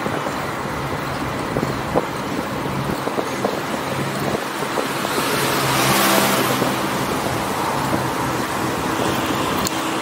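Steady road and traffic noise heard from a moving bicycle. A motor vehicle passes, loudest about six seconds in, then fades.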